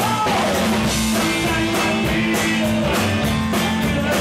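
Live rock band playing: guitar carrying a melodic line that bends in pitch over bass and a drum kit keeping a steady beat.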